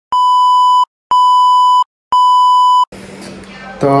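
Three identical steady electronic beeps, each just under a second long and about a second apart: the test-pattern tone that goes with TV colour bars, used as an edit transition. A faint low hum follows.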